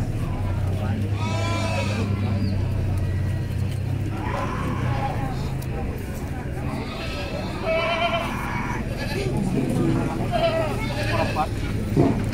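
Goats bleating: a wavering call about a second and a half in and another around eight seconds, over background chatter of people and a low steady hum in the first few seconds.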